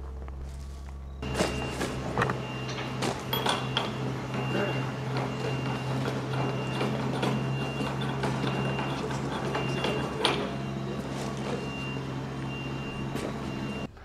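Scattered clicks and knocks from a steel bar being handled against a tankette's metal hull, over a steady low drone that starts abruptly about a second in.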